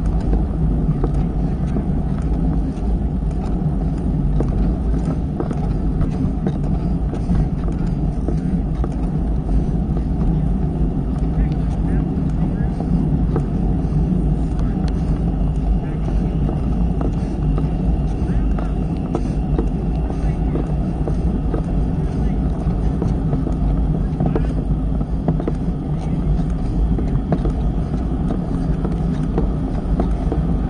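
Steady low rumble of wind on the microphone and tyre noise from a bicycle riding along a road, picked up by an action camera mounted on the bike.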